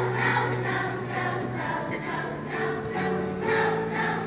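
Children's choir singing, accompanied by an electric keyboard playing sustained low notes.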